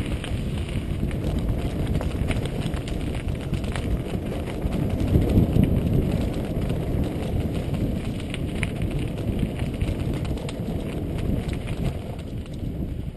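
Mountain bike riding over a rough dirt track: wind rushing on the camera's microphone, with many small rattles and knocks from the bike over the bumps, loudest about five to six seconds in.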